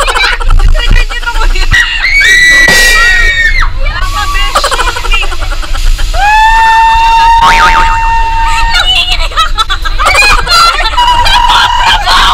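Amusement-ride riders screaming and laughing: a long high scream about two seconds in, a longer, lower held scream about six seconds in, and shorter shrieks near the end, over a low rumble of wind on the microphone.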